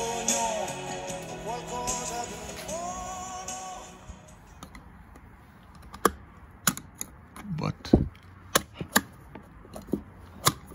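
Background music for the first few seconds. Then a string of sharp plastic clicks and knocks as a plastic emergency-refuelling adapter is worked into a car's capless fuel filler neck.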